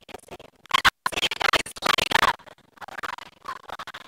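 Crackling, broken-up recording with a faulty audio feed, a voice breaking through it distorted in loud bursts. The sound cuts out completely for an instant just before a second in. It is loudest from then until about two and a half seconds in.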